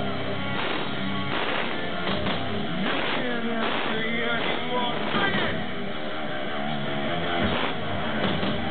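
Live rock band playing: electric guitars, drums and a male singer, heard loud and steady through the crowd's recording microphone.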